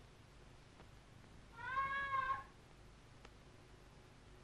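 A cat meowing once, a single call of just under a second about halfway through, rising slightly and falling in pitch.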